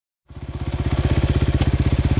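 Husqvarna 501 enduro motorcycle's single-cylinder four-stroke engine running with a steady, even firing beat. It fades in about a quarter second in and rises to full level within the first second.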